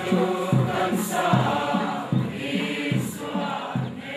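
A crowd of men and women singing a hymn together, moving from note to note about twice a second.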